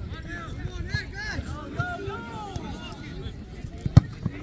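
Players' voices calling and shouting across an open football pitch, with a few dull thuds, and a single sharp thump just before the end.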